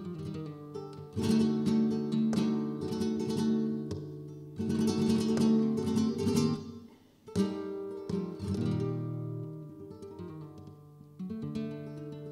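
Flamenco guitar playing solo in a fandango: loud strummed chords about a second in, at about four and a half and at about seven seconds, each followed by picked notes ringing and dying away.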